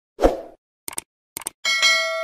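Sound effects of a subscribe-button animation: a short pop, then two quick double clicks like a mouse clicking, then a bell chime that starts near the end and keeps ringing.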